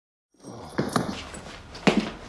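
Footsteps on a hard floor at a steady walking pace, about two steps a second, over a low room hum that cuts in about a third of a second in after silence.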